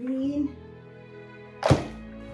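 Soft background music runs throughout. About three-quarters of the way through, one sharp, loud thunk sounds as a plastic plant pot is knocked against the tabletop.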